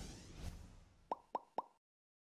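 Logo-animation sound effect: a whoosh fading away, then three short pitched blips about a quarter second apart, after which the sound cuts off suddenly.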